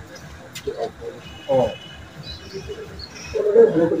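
Only speech: scattered voices of people talking among themselves in a gathering, with louder voices near the end.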